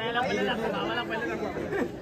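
Indistinct chatter of people talking, with no clear foreground voice.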